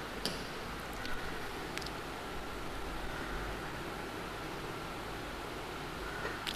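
Steady low hiss of background noise on an online-class call line, with a few faint clicks. The pupil who should be reading cannot be heard.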